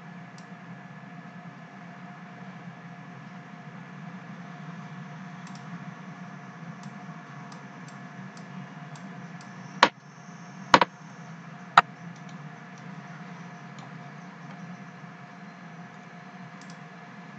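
Three sharp computer-mouse clicks about a second apart, midway through, with a few fainter clicks scattered around them, over a steady low background hum.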